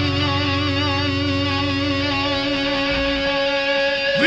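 Live rock band music: electric guitars ringing out sustained notes, the higher ones wavering with vibrato, while the low end thins out about halfway through.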